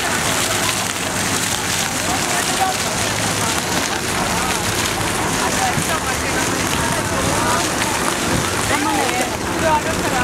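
Splash-pad fountain jets spraying and splashing onto wet pavement, a steady hiss, with faint voices of people around.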